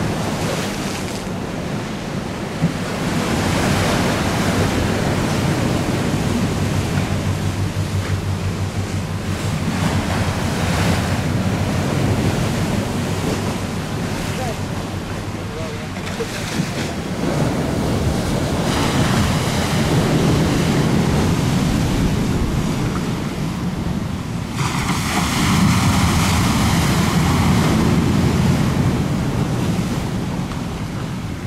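Strong wind on the microphone over choppy water breaking and washing, rising and falling in gusts, with the loudest surge near the end.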